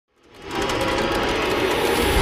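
Logo-intro sound effect: a dense, fast-rattling whoosh that fades in within the first half second and swells slowly.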